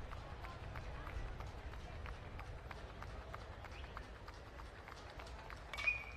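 Faint, steady ballpark crowd ambience between pitches. Near the end comes one sharp ping of an aluminum bat meeting the pitch, with a brief metallic ring.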